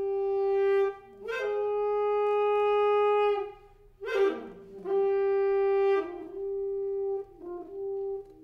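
Solo soprano saxophone playing slowly and unaccompanied. It holds long notes of a second or two on much the same pitch, with a sharp accented attack about four seconds in and shorter, broken notes near the end.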